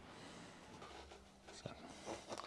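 Near silence: faint room tone with a few soft, brief rustles.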